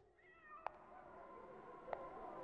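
A faint cat meow near the start, followed by two faint clicks.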